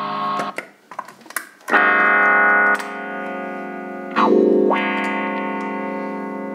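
Distorted electric guitar (Cort X6) played through a Zoom GFX-1 multi-effects pedal into a Laney amp. A short chord and a few muted pick clicks come first, then a loud held chord. About two-thirds of the way in a second chord is struck with a quick upward sweep in tone, and it rings out.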